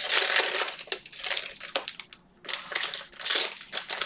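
Cellophane pack wrappers being crinkled and crumpled by hand in several uneven bursts, with a short pause a little past two seconds in.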